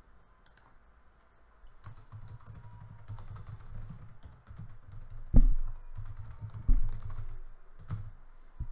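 Typing and clicking on a computer keyboard at the desk, starting about two seconds in and running as a rapid scatter of small clicks, broken by two louder thumps, a little over five and nearly seven seconds in.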